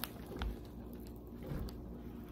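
Quiet room tone with a faint steady hum, broken by a couple of soft clicks and light handling bumps, about half a second in and again near the end.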